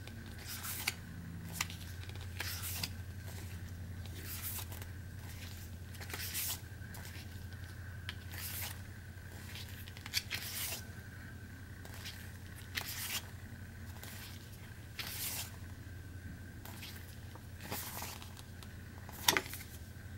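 Pages of a paper booklet being flipped through by hand, each turn a short soft rustle, coming unevenly about once a second or so.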